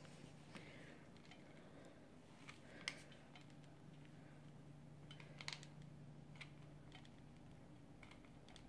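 Near silence: faint room tone with a steady low hum and a few soft clicks as a hot glue gun is squeezed and handled.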